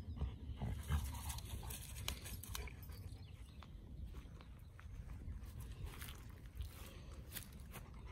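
A dog breathing and sniffing quietly as it noses a log, over a low steady rumble with a few faint clicks.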